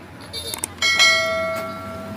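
A metal object struck, ringing with a clear bell-like tone made of several pitches that starts suddenly about a second in and fades away over the next second, after a few light clicks.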